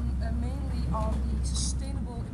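A woman speaking over a steady low rumble, with a short hiss about three quarters of the way in; the rumble eases off at the end.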